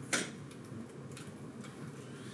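A spoken word ends, then quiet room tone with a few faint, light clicks from the lectern.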